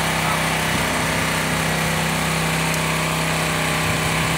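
Small gasoline engine of a pressure washer running steadily at a constant speed.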